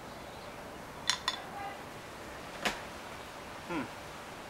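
A beer bottle and a tall weizen glass as a pour of hefeweizen is finished: a couple of light clinks about a second in and one sharp click near three seconds, over faint background hiss.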